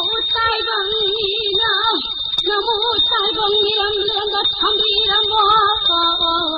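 A solo high voice singing long, drawn-out notes with a wide vibrato, pausing briefly about two seconds in. A steady thin high-pitched whine runs underneath.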